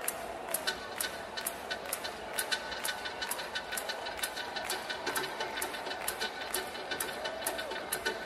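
Electronic dance music from a live set: a steady, crisp ticking beat about twice a second over held synth tones.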